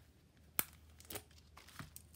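Paper stationery packets and a small kraft paper folder being handled. There is a sharp crinkle about half a second in, then two softer ones.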